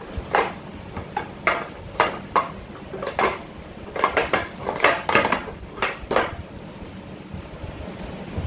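Plastic sport-stacking cups clacking rapidly as a 3-6-3 stack is built up into three pyramids and then stacked back down into columns. The clatter stops about six seconds in.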